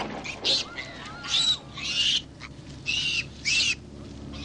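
A bird calling five times in short, raspy calls, each rising and falling in pitch.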